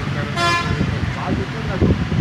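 A vehicle horn toots once, briefly, about half a second in, over a murmur of children's voices.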